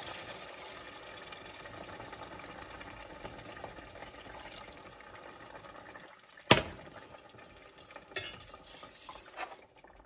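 Broth poured into a hot stainless steel pan to deglaze it, giving a steady frying hiss that fades over the first six seconds. A sharp clink about six and a half seconds in, then a few lighter knocks of a utensil against the pan.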